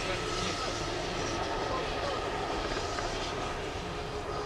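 A distant train passing: a steady, even running noise with a faint thin tone held above it.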